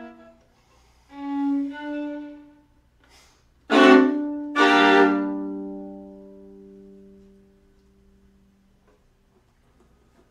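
Violin and viola duo playing a piece's closing bars: a few short notes, then two loud, forceful chords about a second apart. The second chord is left ringing and dies away over about three seconds.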